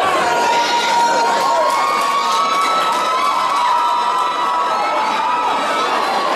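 Audience cheering and shouting, with long high-pitched held cries sustained over the crowd noise.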